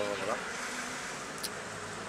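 Steady outdoor background noise in a pause between spoken words, with one faint click about one and a half seconds in.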